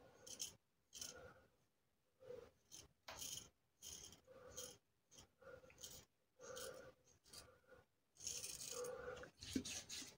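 Parker Variant double-edge safety razor scraping stubble in short, faint strokes, roughly one or two a second, with one longer stroke near the end.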